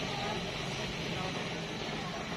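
Faint background talk over a steady outdoor noise.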